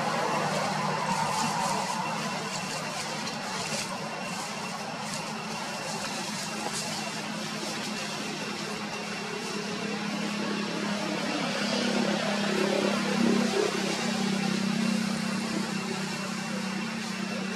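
Steady outdoor background noise with a constant low hum that swells a little near the end.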